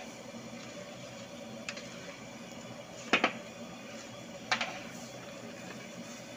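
A long-handled metal ladle stirring a thick, granular mixture in a large iron kadhai, knocking and scraping against the pan: a faint click near the start of the second half, a loud double knock about three seconds in and another sharp one about a second and a half later, over a steady background noise.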